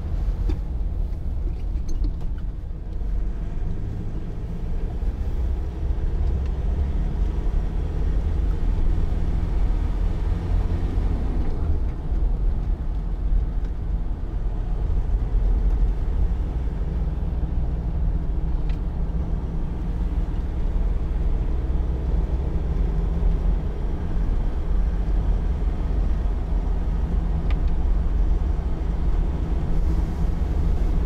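Land Rover Defender 90's 2.2-litre four-cylinder turbodiesel under way, a steady low engine drone mixed with road and tyre noise.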